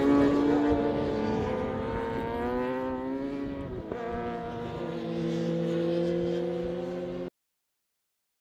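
Racing motorcycle engines running hard on a circuit, their pitch gliding slowly up and down, cutting off suddenly near the end.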